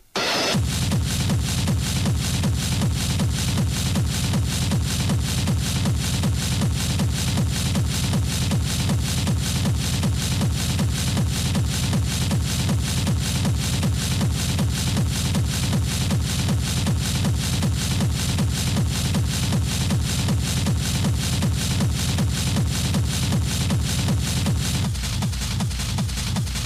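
Hard techno (schranz) DJ mix: a noisy build-up cuts out right at the start, then a fast, heavy kick-drum beat drops in and runs on steadily.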